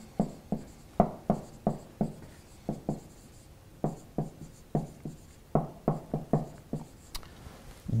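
Marker writing on a whiteboard: a string of short, quick pen strokes and taps as words are written out.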